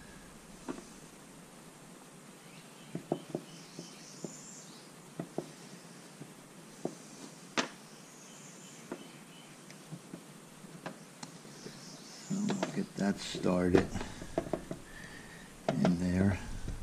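Scattered light clicks and taps of small parts being handled as a rubber lip seal and a steel socket are worked against a plastic outboard water pump housing. Near the end comes a louder, busier stretch of handling noise.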